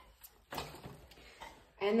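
A faint click, then a short scraping rattle that fades within about a second, as a road bike's rear wheel is popped into place in the frame's dropouts.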